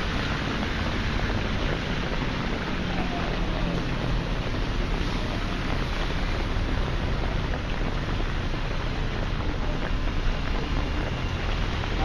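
Steady street ambience of a rainy city: traffic running on a wet road with a continuous hiss and low rumble.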